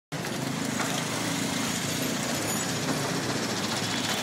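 A motor vehicle engine running steadily close by, over the general noise of street traffic.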